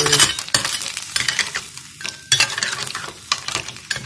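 A metal spatula stirring shell-on freshwater snails through a simmering curry in a frying pan: a run of irregular scrapes and clatters of shells against the pan.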